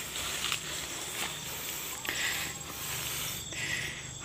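Rustling and brushing in leafy undergrowth, in several short patches, over a faint steady high-pitched insect drone.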